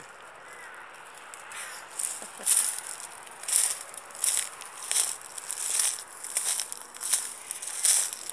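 Footsteps crunching through dry leaf litter, a crackly rustle about one and a half times a second at walking pace.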